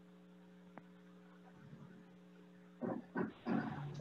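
A steady, low electrical hum with a few even overtones, with one small click about a second in; a voice comes in near the end.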